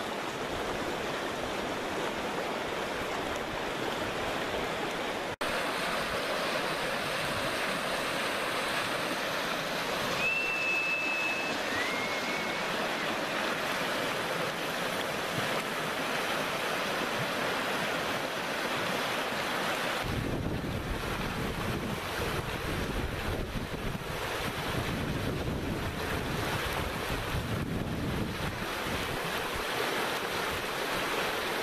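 Steady rush of spring water flowing past, with wind buffeting the microphone in the last third. A short high two-part whistle sounds about a third of the way in.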